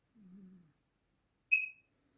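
A single short, high-pitched ping about one and a half seconds in that fades quickly, after a faint low murmur near the start.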